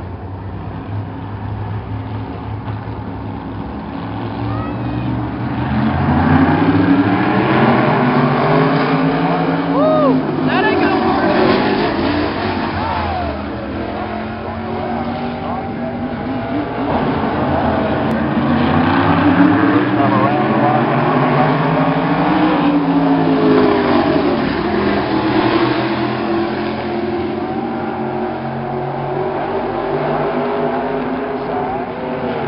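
A pack of race cars on a short oval track accelerating and passing by, their engines rising and falling in pitch in two long swells as the field goes past.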